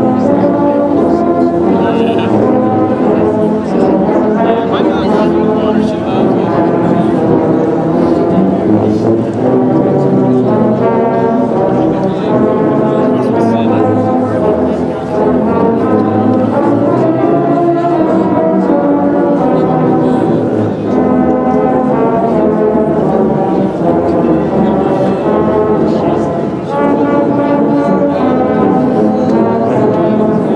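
A massed ensemble of tubas, sousaphones and euphoniums playing a Christmas carol together, with sustained low brass chords that change every second or so.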